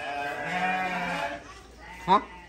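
An animal's single long call, steady in pitch, lasting about a second and fading out.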